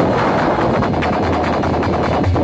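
Loud live folk-stage band music over a PA, dense fast percussion in a heavily distorted wash.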